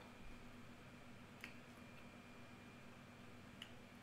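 Near silence: room tone, broken by two faint clicks, one about a second and a half in and one near the end.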